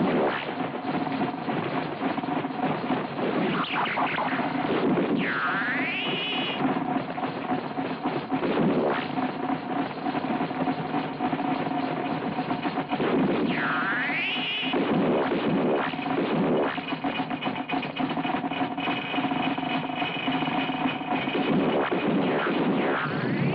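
Film soundtrack of a ray-gun fight: electronic music with held tones under dense, noisy sound effects. Two swooping electronic whines dip and then rise, about five and fourteen seconds in.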